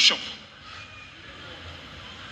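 A man's voice through a microphone ends a word, then a pause of steady room noise: a low hum and hiss from the hall's sound system with faint distant voices.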